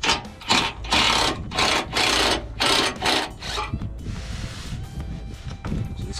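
Small cordless impact driver run in about six short bursts over the first three and a half seconds, backing out the 8 mm screws that hold the pan under the truck.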